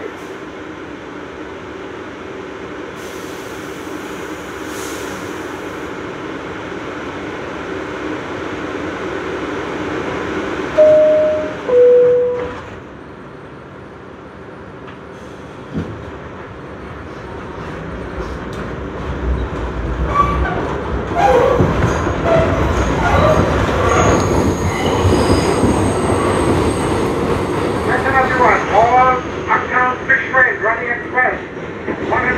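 R62A subway car standing at the platform with a steady hum. About eleven seconds in, the two-note door chime sounds, high then lower, and a thud follows a few seconds later. The train then pulls out, and the rumble of its motors and wheels builds.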